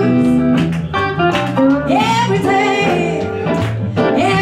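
Live blues band: a woman singing over electric guitar and a Nord Stage 3 keyboard.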